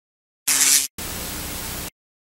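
Static-noise sound effect for a logo animation: a short, loud burst of static about half a second in, then a quieter, steady hiss for about a second that cuts off abruptly.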